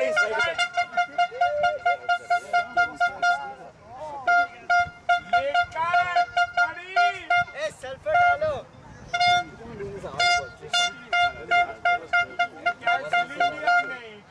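A beeping alarm: one steady tone pulsing about four times a second in long runs, with short breaks about 3.5 s and 8 s in.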